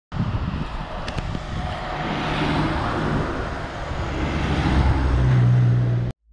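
Street traffic with cars passing close by. The low hum of an engine swells toward the end as a vehicle comes past.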